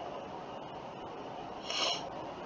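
Faint steady hiss of background room and microphone noise in a pause between spoken phrases, with a short soft rush of noise near the end.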